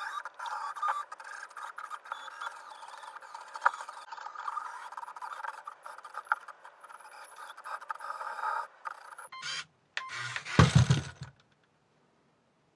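Small electric drive motors of a plastic building-brick climbing robot whirring, with its plastic wheels and gears clicking and scraping against the edge of a book stack as it climbs. Near the end the robot falls back and lands with a loud clattering thud.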